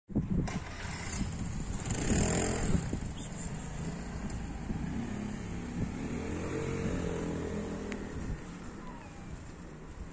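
A motor vehicle engine running, loudest around two seconds in, rising and falling again a few seconds later, and dying away after about eight seconds.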